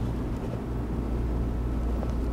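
Steady low hum with a faint hiss: background noise of the studio recording between spoken phrases.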